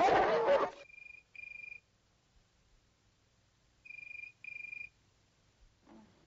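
A telephone ringing in the British double-ring pattern: two short rings close together about a second in, and again about four seconds in, much quieter than a loud dense sound that cuts off abruptly just under a second in.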